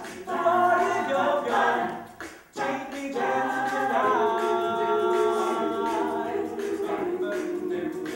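Mixed-voice a cappella group singing, with no instruments. The singing breaks off briefly about two and a half seconds in, then the voices hold a sustained chord from about four seconds until near the end.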